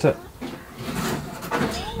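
A man's voice finishing a word, then quieter voices with a small child's high-pitched rising call near the end.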